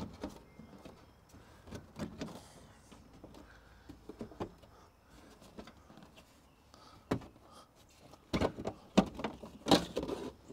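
Sheet-metal access panel of an Amana package unit being worked loose and pulled off: scattered light scrapes and clicks, then a cluster of louder metal knocks and rattles near the end as the panel comes free.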